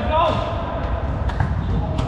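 Indoor volleyball rally: players' voices calling out over the hall's low rumble, with a sharp hit of the ball about one and a half seconds in, in a large, echoing sports hall.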